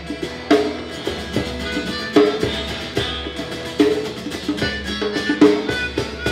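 Live acoustic band playing an instrumental passage with no vocals: a djembe hand drum beating an accented pulse, with a strike about every second, over strummed acoustic guitar.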